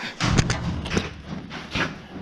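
A few scattered light knocks and thuds over low background noise.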